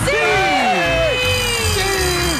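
Studio audience and host screaming "¡Sí!" in celebration, several long drawn-out yells that fall in pitch and overlap, over game-show background music with a steady low beat.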